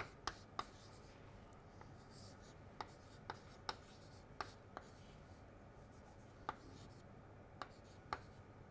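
Chalk writing on a chalkboard: about ten sharp, unevenly spaced taps as the chalk strikes the board, with faint scratching between them.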